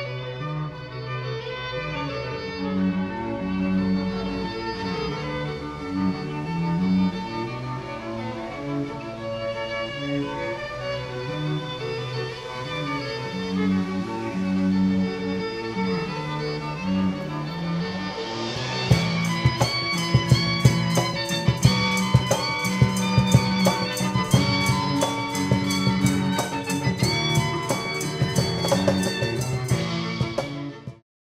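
Two violins and a cello playing a pop song, with bowed melody over a low pulsing bass line. About two-thirds through, a drum kit comes in with a steady beat of cymbal and drum hits under the strings.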